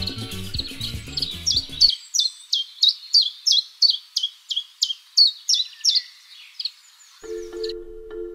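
A songbird singing a rapid series of short, high, down-slurred chirps, about three a second, that turns into a lower trill near the end. Music stops just before the bird starts, and a new tune begins near the end.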